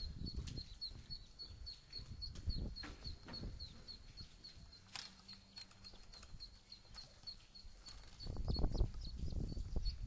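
Ducklings peeping steadily, short high peeps about three or four a second, over knocks and clanks from an aluminium telescopic ladder being climbed. A louder low rumble comes near the end.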